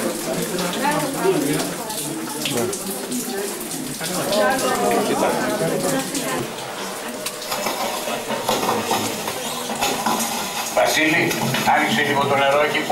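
Indistinct talk of several people in a mine tunnel, over a steady hiss.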